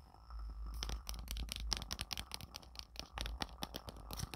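A boxed tarot deck being handled in its cardboard box: a quick, dense run of light clicks, taps and rustles, over a steady low hum.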